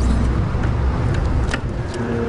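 Low, steady outdoor rumble, like street traffic, with two sharp clicks near the end.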